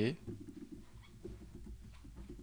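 Faint scattered clicks of a laptop keyboard over a low, steady room hum.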